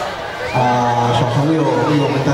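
A man speaking into a handheld microphone, his voice amplified through the stage PA, with a short break just before half a second in.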